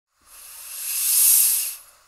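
Espresso machine letting off a hiss of steam that swells to a peak and fades away within about a second and a half.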